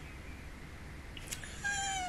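Faint room hum, then near the end a woman's short, high-pitched squeal as she starts to laugh.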